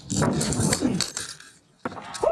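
Scuffing and rustling from a pitcher's windup and delivery on a dirt mound, with faint voices underneath. The sound cuts out briefly near the end, then comes a single sharp click.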